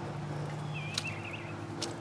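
Faint steady low hum of background noise, with two soft clicks, one about a second in and one near the end, and a brief warbling chirp just before the first click.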